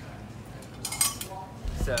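Stainless steel ladles and wire skimmers clinking against each other in a utensil crock as they are handled. A short cluster of bright metallic clinks comes about a second in.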